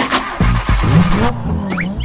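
A Porsche's engine starting on a key turn: a rushing burst of noise for just over a second, then an engine note that rises as it catches. The car, which had refused to start, now runs. Background music with a beat plays throughout, with a couple of whistle-like pitch sweeps near the end.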